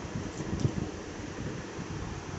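Steady fan noise in a small room.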